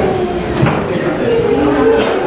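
Many people talking at once in a room, an overlapping hubbub of conversation with no single clear voice.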